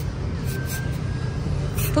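Steady low rumble of city street traffic, with no distinct events.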